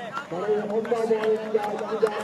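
A man's voice held on a drawn-out, fairly steady note as the bowler runs in. Right at the end comes a sharp crack: a cricket bat striking a taped tennis ball.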